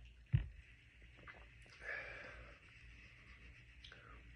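Quiet mouth and breath sounds of a taster after a sip of barrel-proof bourbon: a short thump about a third of a second in, then a breathy exhale around two seconds in.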